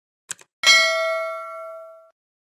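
A single metallic ding, struck a little over half a second in and ringing out as it slowly fades, with two faint ticks just before it.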